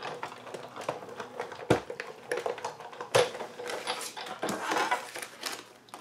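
A Sizzix Big Shot die-cutting machine being hand-cranked, rolling a cutting sandwich with a thin steel die through its rollers. It gives an irregular run of clicks and creaks, with two sharper knocks about two and three seconds in.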